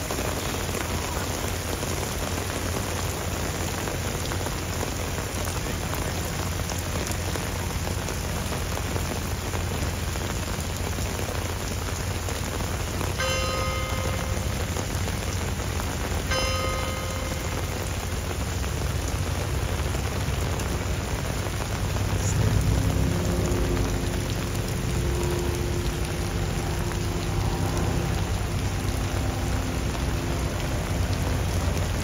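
Heavy rain pouring onto stone paving, a steady hiss of water. Two short pitched notes sound about halfway through, a few seconds apart, and in the last third a low pitched sound joins, briefly louder at first.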